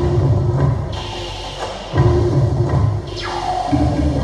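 Loud drum-led music, with heavy low drumming that surges anew about every two seconds.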